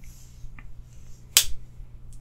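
Folding knives being handled: a brief rustle, then one sharp click about one and a half seconds in.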